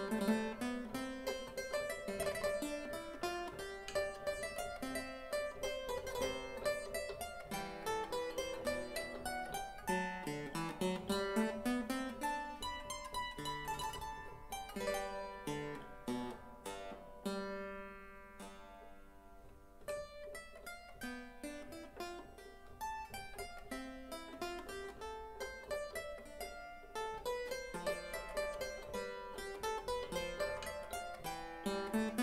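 Dolmetsch clavichord played solo in a 17th-century English almand, a steady run of quiet plucky notes. About two-thirds of the way through, a chord is held and fades away before the playing resumes.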